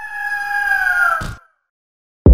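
Eagle-screech sound effect: a single long, shrill cry whose pitch falls slightly towards its end, cut off sharply after about a second and a quarter.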